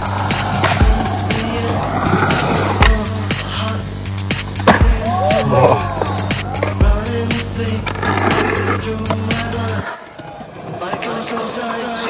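Skateboard wheels rolling on a concrete bowl under music with a steady bass beat; the beat cuts out about ten seconds in.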